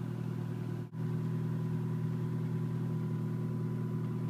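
Car engine idling steadily, heard from inside the cabin as an even low hum, with a momentary dropout about a second in.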